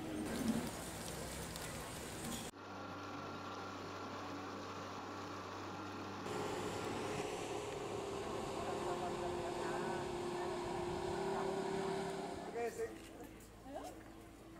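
A motor running steadily, a hum with several held tones that starts abruptly about two and a half seconds in and fades near the end; voices are heard briefly at the start and near the end.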